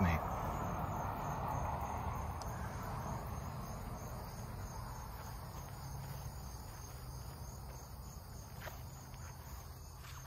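Insects trilling steadily in the grass, a faint high pulsing tone. Under it is a soft rustling noise that is strongest in the first few seconds and slowly fades.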